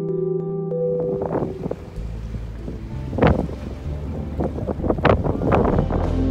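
Wind gusting on the microphone over a steady low rumble of a boat's engine and water, with background music fading out about a second in.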